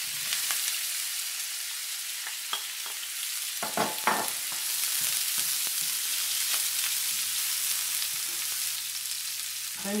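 Red and green onions with garlic and ginger sizzling in hot oil in a frying pan: a steady high hiss. A spoon stirs them, with scattered knocks and scrapes against the pan, a cluster of them about four seconds in.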